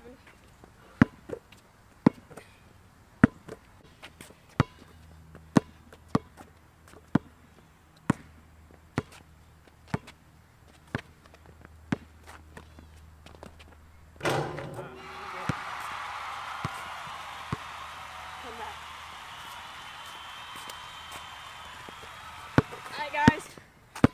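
Basketball dribbled on an asphalt court, about one bounce a second. About fourteen seconds in comes a loud hit, then about eight seconds of dense, loud noise with voice-like sound in it, before it drops away near the end.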